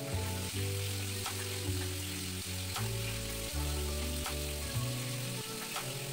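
Waffle batter sizzling inside a closed electric mini waffle maker, a steady hiss, with background music playing underneath.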